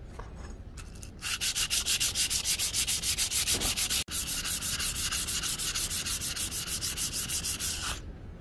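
A steel knife blade being rubbed by hand with an abrasive pad: fast, scratchy back-and-forth strokes, about six a second, starting about a second in, with a brief break halfway. The rubbing brings out the electro-etched pattern on the blade.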